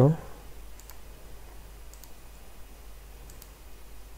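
A few faint, scattered computer mouse clicks over a steady low electrical hum.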